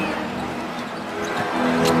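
Basketball game sound: a ball dribbled on the hardwood court over arena noise with a steady held tone underneath, and a sharp knock near the end.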